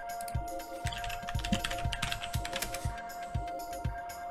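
Computer keyboard typing, a quick run of keystrokes from about a second in to nearly three seconds, as login credentials are entered. Background music with a steady beat plays underneath.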